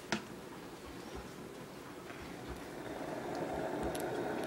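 Philips electric kettle switched on with a click, then its water starting to heat: a low rushing noise that grows steadily louder.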